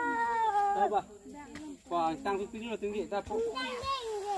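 Young children's high-pitched voices: one long drawn-out call in the first second, then quick, choppy chatter.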